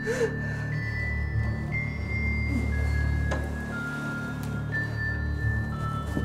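Background film score: low sustained drones under high held notes that step to a new pitch every second or so.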